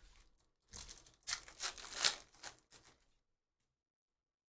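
A foil trading-card pack wrapper is torn open and the cards are handled, making crinkling, tearing rustles in several short bursts that stop about three seconds in.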